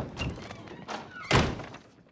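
A single heavy thud about a second and a half in.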